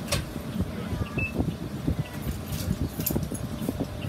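Inside a city bus standing with its engine idling: a low rumble with frequent small rattles and clicks from the bus's fittings, and one sharper click right at the start.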